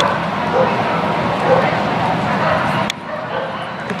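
Dog barking over steady background voices and noise, echoing in a large indoor hall. The overall noise drops away about three seconds in.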